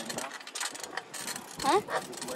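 Bicycle freewheel ratchet ticking in quick, uneven clicks as the bike coasts, with a short child's "Huh?" near the end.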